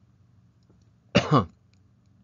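A man clears his throat once, briefly, just over a second in.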